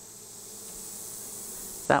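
Honeybees buzzing around an open hive, the hum slowly growing louder.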